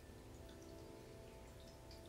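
Near silence: the faint held notes of soft meditation background music, fading out.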